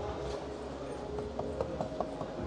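Light taps of fingers on a car's rear door trim panel, about five quick ticks in the second half, over a steady background hum.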